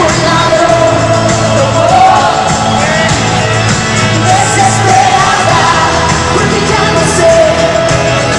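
Live pop music from a concert stage: a full band with a singer's voice wavering over it, loud and steady.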